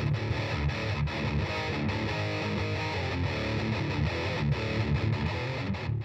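Electric guitar played with heavy distortion through a Peavey Vypyr modelling amp, a steady riff of changing notes that cuts off abruptly at the end.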